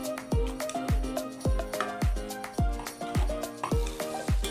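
Background music with a steady beat: a deep drum hit about twice a second under a melody.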